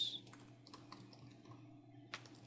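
Faint computer keyboard keystrokes: a run of light, irregularly spaced clicks as a word is typed.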